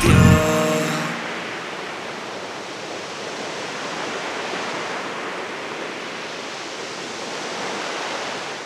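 The song's last notes ring out and stop about a second in, leaving sea surf breaking on a beach: a steady wash of waves.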